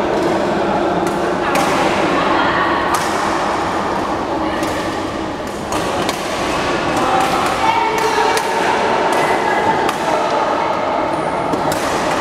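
Badminton rackets striking a shuttlecock: sharp, irregular hits every second or so during rallies, over indistinct voices in a large, echoing sports hall.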